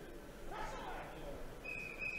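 Crowd murmur in a sports hall, with an indistinct voice rising in pitch about half a second in. Near the end a steady, high referee's whistle blast starts, stopping the bout.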